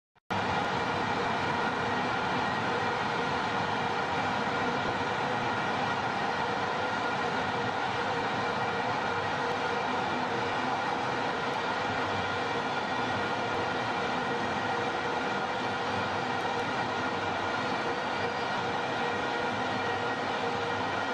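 Stadium crowd noise with a steady drone of many horns blown together in the stands, unbroken throughout.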